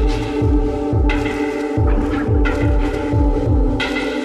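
Dark industrial techno: a deep kick drum with a downward-sweeping pitch pulses in a steady rhythm under a sustained synth drone, with bursts of hissing noise over the top.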